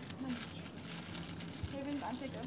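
Faint rustling and handling noises of clothing and small items being picked up at a table, with a brief murmur of voice.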